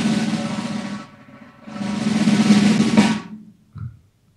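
Drum roll sound effect played twice: the first roll stops about a second in, and a second roll of about a second and a half follows after a short gap.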